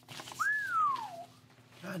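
A person whistles one falling note, a quick rise and then a long slide down in pitch: a whistle of dismay at difficult exam questions.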